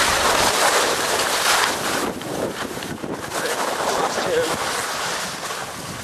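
Skis scraping and sliding over firm snow during a downhill run, with wind rushing over the microphone; loudest in the first two seconds.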